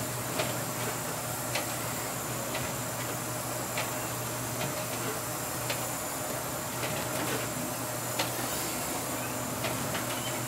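Steady drone of a pilot boat's engines and machinery heard inside the wheelhouse, with short sharp ticks at irregular spacing about once a second.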